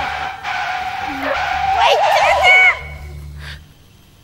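Car tyre-screech sound effect: a long, steady squeal over a hiss that wavers in pitch near the middle, then cuts off abruptly, with voices over it.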